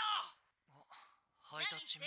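Faint dialogue from the anime's Japanese voice track: a short call of a name at the start, a near-silent pause, then quieter talk near the end.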